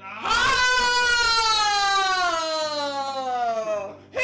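A woman's long, high-pitched wail, held and then slowly sliding down in pitch over about three and a half seconds.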